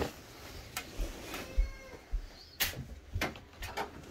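Rustling and handling noise from a phone held on a bunk bed among bedding, with low thumps and several sharp clicks or knocks, the loudest in the second half. A faint, brief gliding pitched sound comes about a second and a half in.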